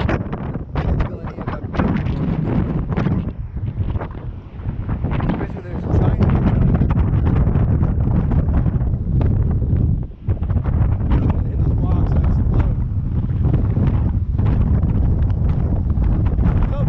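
Strong gusting wind buffeting the microphone: a loud, low rumble that grows heavier about six seconds in and drops briefly near ten seconds. It is loud enough to drown out most of a voice.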